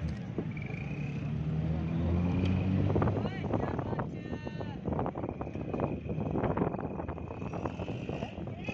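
Vehicle engine running under the mixed voices and traffic noise of a crowded street market, with a short high pitched call about four seconds in.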